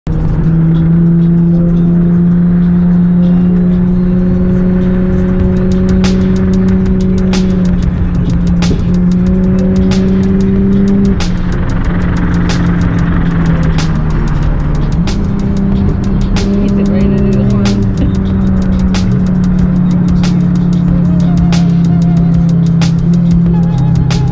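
A car engine droning at steady cruising speed, heard from inside the cabin, its pitch stepping and sliding a few times, with music playing over it.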